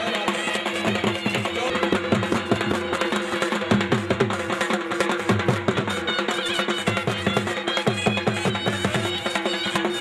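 Traditional Punjabi folk music with fast, steady drumming over a held drone and a melody line.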